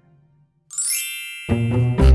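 Intro music fades away, then about two-thirds of a second in a bright shimmering chime sound effect rings with a rising sweep. Half a second later background music with a deep bass begins.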